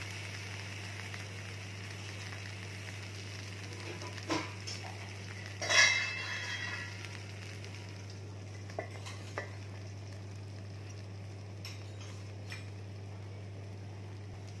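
Taro-leaf rolls sizzling gently in oil in a pan. About six seconds in, a steel lid is set on the pan with a loud ringing clang, followed by a few light clicks.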